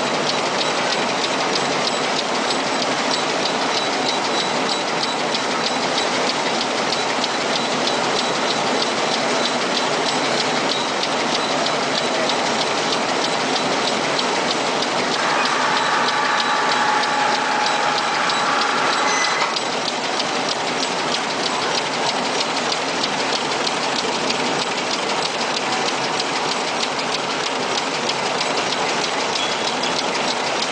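Shade-net knitting machines running on a factory floor: a steady, fast, even mechanical clatter. A set of higher tones joins for about four seconds past the middle.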